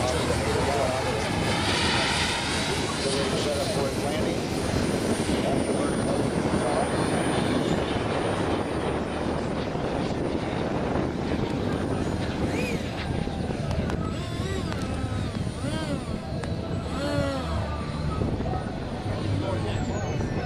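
Radio-control model jet's JetCat P-160SX turbine running in flight just after takeoff, a steady loud rushing jet noise.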